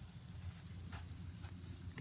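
Faint footfalls of a small flock of sheep and a dog moving over sand, under a low, uneven rumble, with two soft ticks about a second and a second and a half in.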